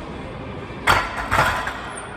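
Plate-loaded barbell racked into the bench's steel uprights: a sharp metal clank a little under a second in, then a second clank about half a second later, over steady gym background noise.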